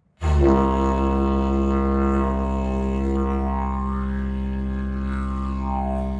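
A didgeridoo drone that starts abruptly just after the start and holds one steady low note, its overtones sliding up and down a few times.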